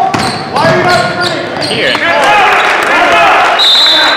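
A basketball dribbled on a hardwood gym floor, with sneakers squeaking during a fast break. Near the end, a short high referee's whistle blast stops play.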